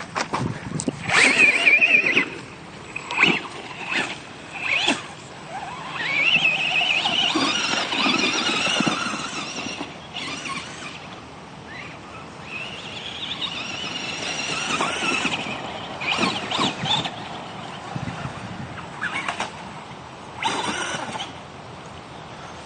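Radio-controlled truck's motor and drivetrain whining at a high pitch in several throttle bursts, rising and falling as it is driven, with scattered sharp knocks.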